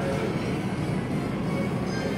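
Steady low rumble of indoor background noise with faint music playing.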